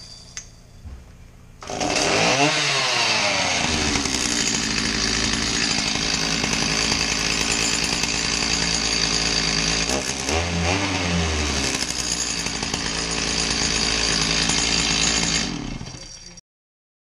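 Stihl MS290 chainsaw's two-stroke engine starting about two seconds in, revving up and then running steadily with its bar and chain off. It is revved once more about ten seconds in and shut off just before the end.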